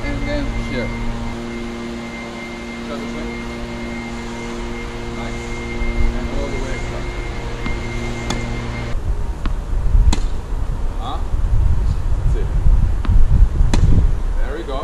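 A steady mechanical hum with several fixed pitches, like a running air-conditioning or fan unit, cuts off suddenly about nine seconds in. After that there is low rumbling noise with a few sharp knocks.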